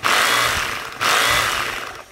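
Hukan 1050 W three-function rotary hammer drill, unloaded, set to hammer mode, run in two short trigger bursts. Each burst starts abruptly and fades as the motor winds down.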